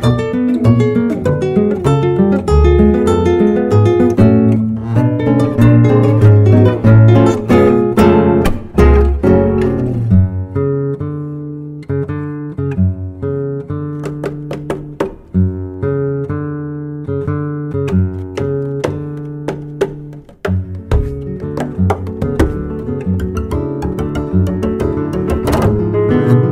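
Acoustic guitar music: plucked notes and chords in a steady run, softer through the middle and fuller again near the end.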